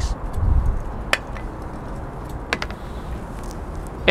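Outdoor city background noise with a low rumble in the first second and a few sharp, short clicks, one just after a second in and others about two and a half seconds in.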